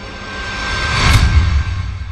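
Cinematic whoosh sound effect for a logo reveal: a rush of noise over a deep rumble that swells to a peak about a second in, with a sharp swipe at the top, then dies away.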